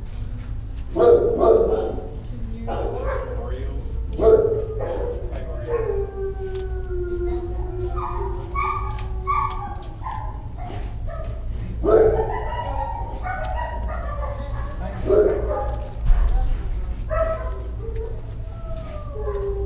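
Shelter dogs barking and howling, with loud barks about a second in, near four seconds, and near twelve and fifteen seconds, and long howls that slowly fall in pitch in between.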